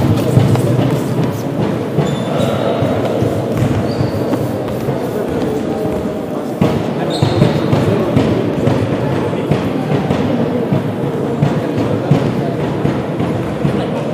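Many voices talking at once, echoing in a large sports hall, with occasional thuds.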